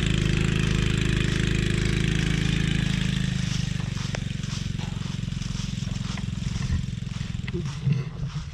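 Quad ATV engine running as the ATV drives away uphill, its steady hum growing fainter after about three seconds.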